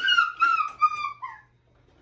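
A high-pitched whining cry, drawn out and wavering slightly for about a second and a half before it trails off.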